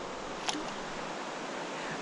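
Steady rush of a shallow, rocky mountain stream flowing past, with one brief click about a quarter of the way in.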